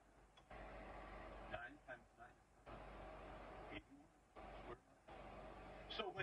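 Faint, distant speech from a radio or TV in the room, coming in stretches with short gaps, over a low steady hum.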